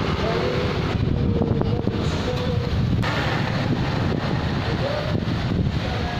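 Wind rumbling steadily on the handheld camera's microphone, over outdoor street ambience.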